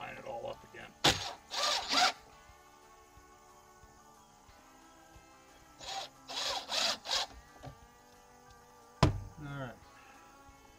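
Cordless drill driving screws into the wooden bench frame in short bursts: a run of bursts about a second in, another cluster around six to seven seconds, and a sharp click near the end.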